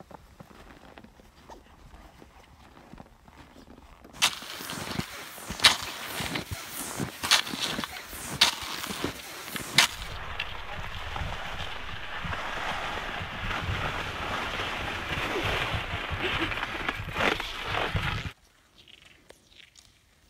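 Sharp clicks and knocks from handling cross-country skis and gear in the snow, then a steady rushing hiss while skiing along a snowy track, which cuts off suddenly near the end.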